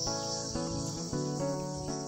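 Insects chirring in a steady, continuous high-pitched drone, with soft background music underneath.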